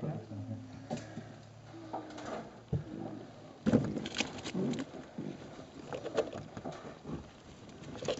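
Baby raccoon kits calling with short, wavering cries, mixed with scuffling and a few sharp knocks against the wood as they shift about and are reached for. The calls get louder and busier about halfway through.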